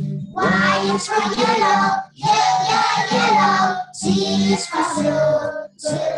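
A group of young children singing a song together in unison, to an acoustic guitar accompaniment, in phrases about two seconds long with short breaks between them.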